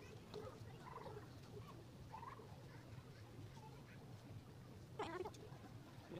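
Near silence: a low steady hum with faint background sounds, and a short high-pitched call about five seconds in.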